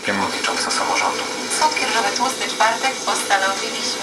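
Speech from an FM broadcast coming through the Unitra ZRK AT9115 receiver's speaker, mixed with hiss: a weak station still being brought in while the receiver's input trimmer is adjusted.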